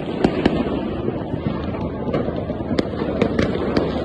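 New Year fireworks going off all across a city: a continuous din of many bursts, with about ten sharp bangs and cracks standing out at irregular moments.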